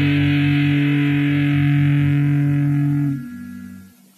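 Closing chord of a garage punk song: distorted electric guitar held and ringing over a pulsing low end, dropping away about three seconds in and fading out.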